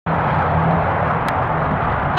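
Steady outdoor background rumble with a low, uneven hum.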